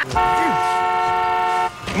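Car horn held in one long, steady honk of about a second and a half, several tones sounding together, then let go; an impatient blast at the slow car ahead.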